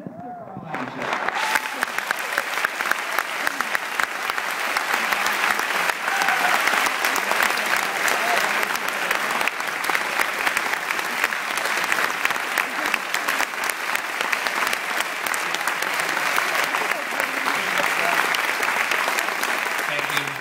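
Theatre audience applauding: many hands clapping in a dense, even patter that swells within the first second, holds steady, and dies away at the very end.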